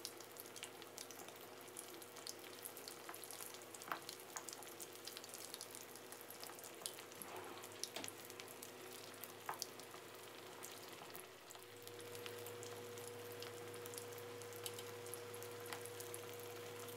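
Pork knuckle deep-frying in hot oil: a faint steady sizzle with many small crackles and pops, the second fry on high heat that puffs and crisps the skin. A low steady hum runs underneath and gets a little louder about twelve seconds in.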